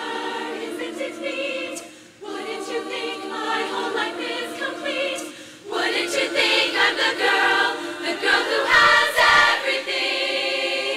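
Women's choir singing in harmony, in phrases with short breaks about two seconds and five and a half seconds in, louder after the second break.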